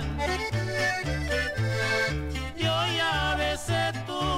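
Instrumental break of a 1972 norteño song: an accordion plays a wavering melody line over a steady bass that alternates between notes about twice a second.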